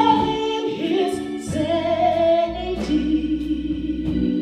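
A woman singing a gospel song through a microphone, holding and sliding between long notes, over sustained organ chords.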